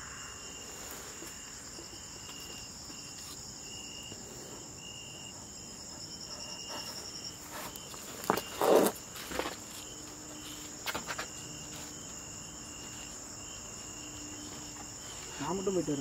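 Crickets and other insects chirping without a break, a steady high trill under a chirp that repeats about twice a second. Around the middle come a few knocks and scuffs, from a person climbing through a barred window opening.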